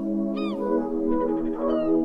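Background music: sustained chords with short high notes that slide down in pitch about half a second in and again near the end.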